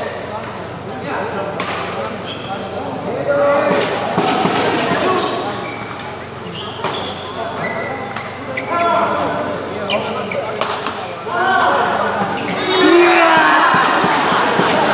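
Badminton rally: rackets striking the shuttlecock in several sharp smacks. Voices of players and spectators are mixed in, loudest near the end.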